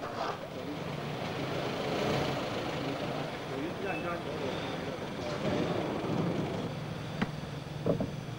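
A minivan's engine running as it drives up and pulls to a stop, with indistinct voices in the background and a single sharp click near the end.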